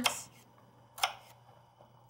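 A single sharp click about a second in, as a knife tip cuts through a shallot and taps the cutting board.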